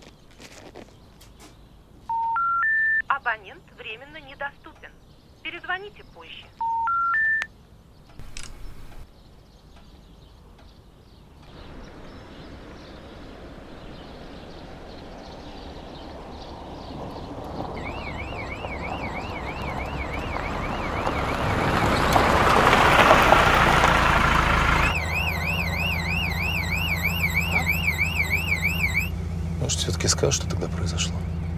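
Phone call failing: three rising beeps of the telephone network's special information tone, each followed by a short recorded operator message, twice, the sign that the number can't be reached. Then a car approaches and passes, loudest about two-thirds of the way in, followed by a fast warbling electronic railway-crossing alarm over the low hum of the car's engine heard from inside the cabin.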